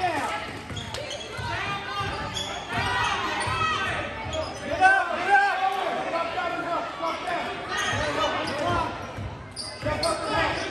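A basketball bouncing on a hardwood gym floor, among many overlapping spectator voices and shouts echoing in a large gym.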